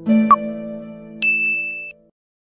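Electronic chime sound effect: a held chord with a short click about a third of a second in, then a bright high ding about a second in. The chime cuts off abruptly just before two seconds.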